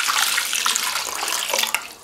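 Water poured in a stream into an aluminium basin of kochia shoots, splashing onto the leaves and the metal to rinse them. The pour stops shortly before the end.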